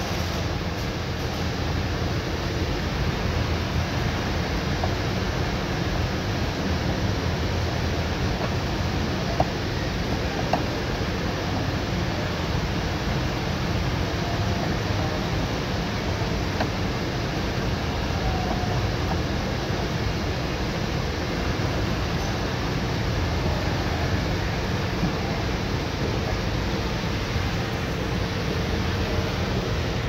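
A steady hum and hiss of background noise, like a fan or air conditioner running, with two small clicks about ten seconds in.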